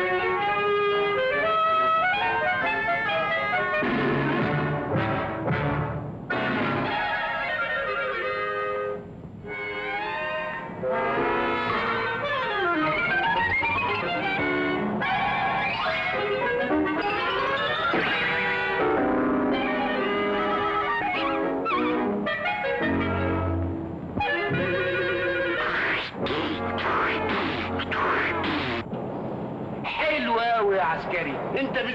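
Orchestral background music with brass, running throughout, with several sliding runs of pitch.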